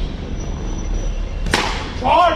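A single sharp crack of a cricket bat striking the ball about one and a half seconds in, over a steady low background rumble.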